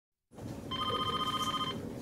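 A telephone giving one short electronic ring, a fast warbling trill about a second long, over low room noise.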